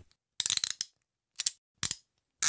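Short, dry metallic clicking and rattling: a half-second rattle about half a second in, then two brief clicks near the end, with dead silence between.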